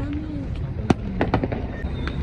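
Firecrackers going off: three or four sharp cracks in quick succession about a second in, the first the loudest, over a steady low rumble.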